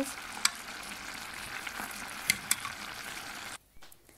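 A pot of rice, carrots and broth simmering with a steady bubbling hiss while a wooden spoon stirs it, with a few sharp clicks. The sound cuts off suddenly near the end.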